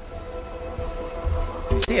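Background music of steady held tones, with wind rumbling on the microphone underneath. A single spoken word comes near the end.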